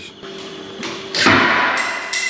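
A sudden loud crack and clatter about a second in, as a bathroom shower fitting breaks, followed by a steady high whistling hiss.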